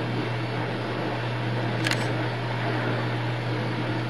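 Steady low hum with an even hiss under it: background room and recording noise. A single short click comes about halfway through.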